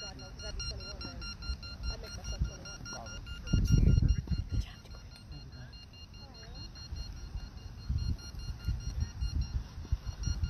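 Beep baseball's electronic beeper sounding a regular string of rapid high beeps, with a loud low rumble about three and a half seconds in and faint voices in the background.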